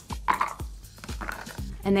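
Background music with a few short, light clinks and knocks from ice in a wine glass being handled on a wooden counter.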